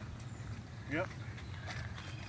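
Footsteps and a rollator walker's wheels rolling over wooden boardwalk planks: a low steady rumble with faint knocks. A man says "yep" about a second in.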